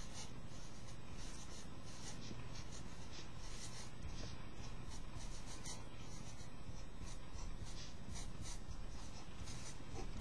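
Felt-tip marker writing on paper: a run of short, irregular strokes over a steady background hum.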